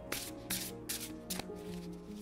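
Soft background music of steady held tones, with a few brief sounds of an oracle card deck being shuffled by hand.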